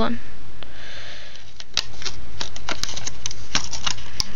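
Thin plastic deli-cup lid clicking and crackling in a string of sharp, separate snaps as it is worked at by hand, starting a little under two seconds in.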